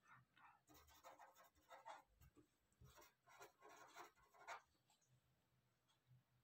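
Faint scratching of a pen writing words on paper, a run of short strokes that stops about five seconds in.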